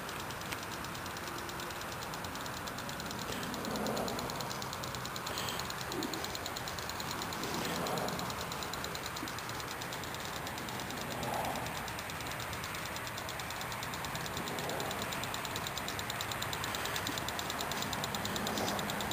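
Steady outdoor background noise, the hum of distant road traffic, swelling slightly a few times.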